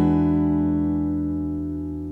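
A chord on an acoustic guitar ringing out and fading steadily after being struck.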